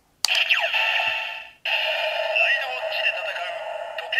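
Kamen Rider Zi-O Ridewatch toy sounding through its small built-in speaker: a button click about a quarter second in, then an electronic sound effect with falling glides, and from about a second and a half in a recorded voice over music. The sound is thin, with no bass.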